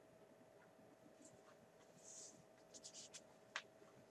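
Faint scratching of a red Pilot FriXion Colors marker tip on planner paper: a few short strokes in the second half, then one sharper tick of the marker against the page.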